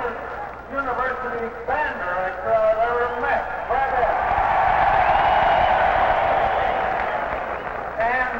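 An indistinct man's voice with no words that can be made out, followed by a steady swell of noise from about four seconds in that fades out just before the end.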